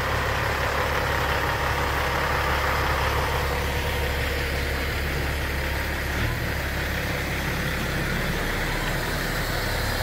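Freightliner semi tractor's diesel engine idling steadily, heard close up beside the truck.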